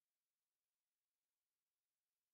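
Silence: a digitally silent track with nothing audible.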